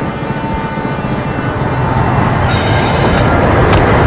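Passenger train running: a steady rumble and rattle of the carriage on the rails, growing louder in the second half.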